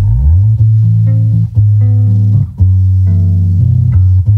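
Electric bass guitar playing long, loud low notes. Right at the start one note slides up in pitch, and short gaps separate the held notes that follow.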